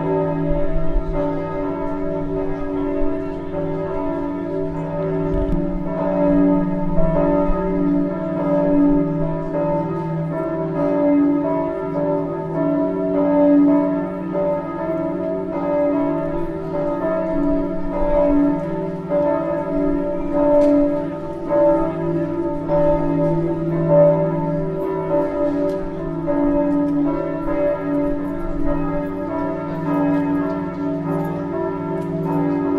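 Church bells ringing continuously, many bell tones overlapping and sustaining, with the loudness swelling as fresh strokes sound.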